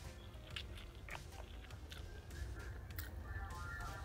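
Someone eating instant noodles, chewing a mouthful, with scattered small mouth clicks.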